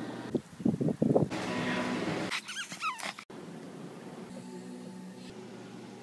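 Sound from a string of one-second phone video clips cut back to back, changing abruptly every second or so. There are a few loud short bursts, then a noisy stretch, then a short wavering high whine, and after a sudden cut a steady low hum for the last few seconds.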